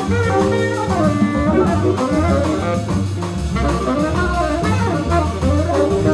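Live jazz combo: a saxophone playing a melodic line with bends in pitch over walking upright bass, drum kit with cymbals, and keyboard piano.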